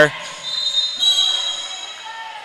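Basketball game play in a gym: crowd noise with high, thin squealing tones that start about half a second in and fade, typical of sneakers squeaking on the court.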